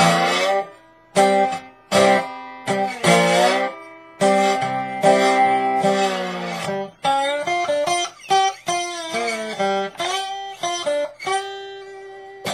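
Acoustic guitar in open G tuning played with a metal slide: a slow blues phrase of picked chords struck about once a second, each left to ring, with notes slid up and down the neck.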